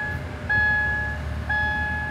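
Subaru Crosstrek's in-cabin warning chime beeping about once a second over the low hum of the engine, just started and idling.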